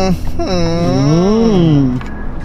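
A single long hummed vocal tone, like a drawn-out 'mmm', its pitch sliding up and then back down.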